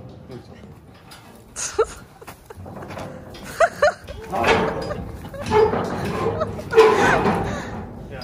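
Steel stock-trailer rear gate being unlatched and swung open: metal knocks and rattles, with a couple of sharp knocks in the first few seconds and busier clanking in the second half.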